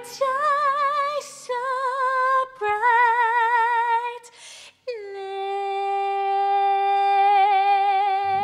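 A female vocalist sings slow phrases with a wide vibrato, with faint accompaniment that fades out after the first second or so. About five seconds in she holds one long, steady note.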